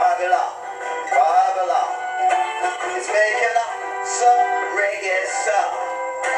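A man singing a reggae song while strumming an acoustic guitar, the melody rising and falling over steady chords. The recording is thin, with no bass.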